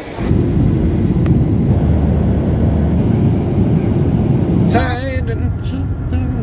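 A loud, steady low rumble that cuts off near the end, when a man's voice starts speaking.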